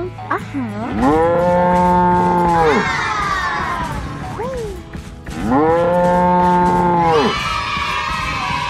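A cow mooing twice, each moo a long call of about two seconds that rises at the start, holds, and drops away at the end.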